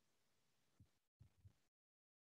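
Near silence: a video call with no one's audio coming through, with only a few very faint low blips.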